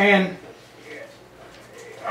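A man's voice saying a short "and" at the very start, then a pause of quiet room tone.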